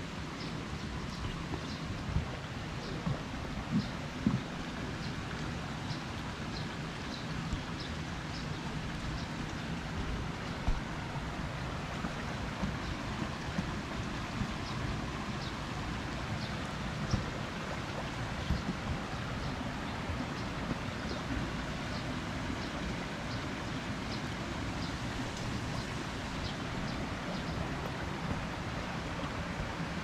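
Steady wash of rain and running stream water, with scattered light taps of raindrops.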